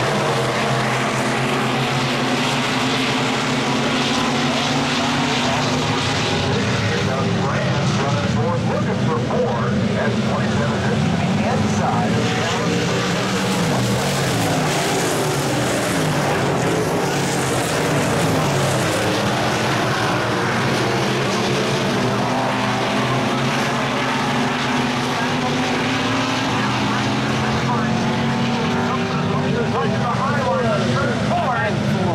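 A pack of dirt-track stock cars racing, their engines running hard together. Several engine notes overlap and rise and fall as the cars go into and out of the turns.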